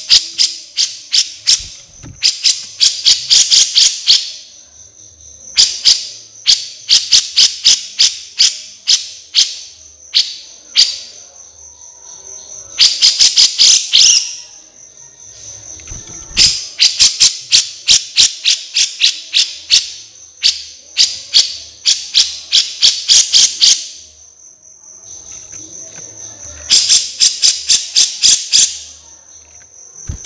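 Insect calls from a bird-training (masteran) recording: a steady high cricket trill runs throughout. Over it come sharp ticks a few per second, which several times speed up into dense runs of rapid ticking lasting a second or two, with short pauses between.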